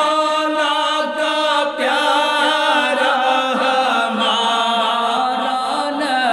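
Two men's voices singing an Urdu naat (devotional praise poem) without instruments, holding long notes that they bend and ornament.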